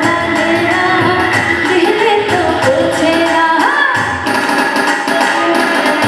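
A woman singing a song into a microphone with a live band: keyboard, electric guitar and hand percussion keeping a steady beat, all amplified through the stage speakers.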